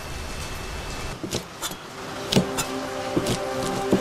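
Cleaver slicing blanched fish skin on a cutting board: several sharp knocks of the blade at an uneven pace, starting about a second in. Soft background music with held notes comes in midway.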